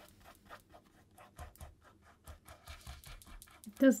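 Faint, irregular scratchy strokes of acrylic paint being worked onto a canvas, a few strokes a second.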